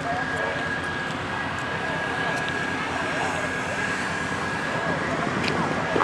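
A car engine running steadily with a thin, constant high-pitched whine over it. Background voices chatter underneath.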